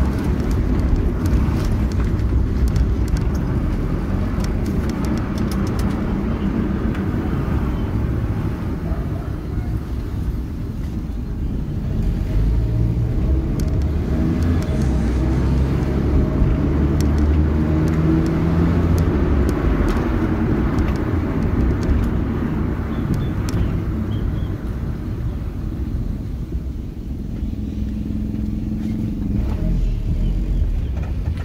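Engine and road noise inside the cabin of a small car with a Toyota 4E-series 1.3-litre four-cylinder engine, driving along steadily, the level rising and falling a little with speed.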